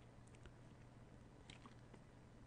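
Near silence: faint room tone with a steady low hum and a couple of tiny clicks.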